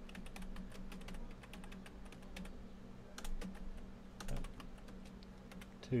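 Typing on a computer keyboard: a quick, uneven run of key clicks, with a steady low hum beneath.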